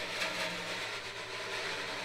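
Wire brush sweeping in a continuous diagonal stroke across a snare drum head: a soft, steady swish.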